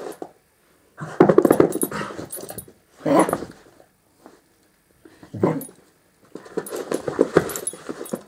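Dog growling during play, in several short rough bursts with quiet gaps between them.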